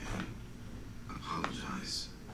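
Faint, hushed speech, with a soft click about halfway through and a sharp hiss near the end.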